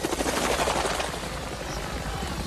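Helicopter rotors beating in a fast, even chop that eases slightly about a second in.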